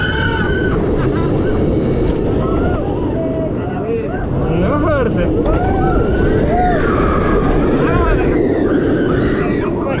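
Launched steel roller coaster train rumbling along its track and up a vertical spike, with wind on the microphone. Riders' voices cry out and exclaim over the rumble.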